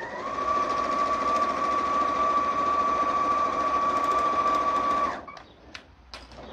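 Elna 560 sewing machine stitching fast: its motor whine climbs as it gets going, holds steady for about five seconds, then stops.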